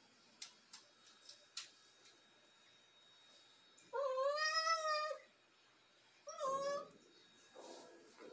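A Siamese cat meows twice, a long call of over a second and then a shorter one, calling for its owner. A few faint clicks come before the calls.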